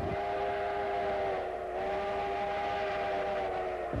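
Steam locomotive chime whistle blowing one long blast: a chord of several tones held steady, sagging slightly in pitch partway through.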